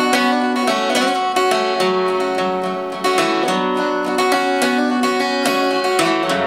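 Acoustic guitar with a capo, played solo in an instrumental passage of a folk ballad, with individual notes and chords ringing out steadily.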